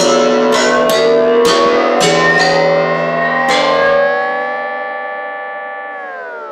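Instrumental music: plucked guitar notes about twice a second. A little past halfway they give way to one held chord that slowly fades.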